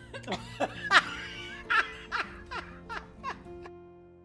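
People laughing in a run of short bursts that fall in pitch and fade out, over background music with held notes.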